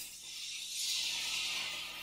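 Sauce of sake, mirin and soy sauce poured into a hot pan of seared salmon, sizzling as it hits the pan; the hiss swells about half a second in and dies down toward the end.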